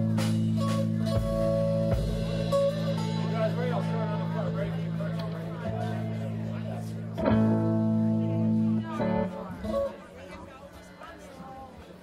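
Amplified electric guitar chords played as a sound check. One chord rings out and slowly fades. A second chord is struck about seven seconds in and damped about two seconds later, and quieter stage noise follows.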